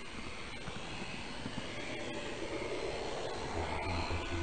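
Z-scale model train running through a tunnel, heard from on board: a steady whirring hiss with a few faint clicks, slowly getting louder, and a low hum coming in near the end.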